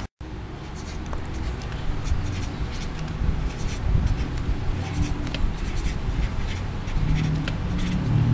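Ink pen scratching on paper in many quick short strokes as a detailed line drawing is made, over a low background rumble. The sound cuts out for a moment just at the start.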